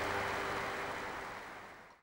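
Audience applauding, the clapping gradually fading and then cut off abruptly at the very end.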